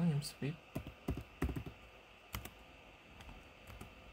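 Computer keyboard keystrokes and mouse clicks: a handful of separate sharp taps in the first two and a half seconds as a command is typed and objects are picked, then quiet room noise.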